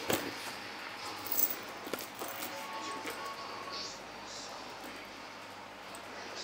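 Quiet handling of a small crossbody bag: a few light clicks and rustles from its metal chain and strap hardware as it is moved about.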